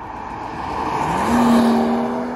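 A BMW M240i's turbocharged inline-six driving past, the engine and tyre noise swelling to its loudest about a second and a half in. Its engine note climbs in pitch and then holds steady near the end.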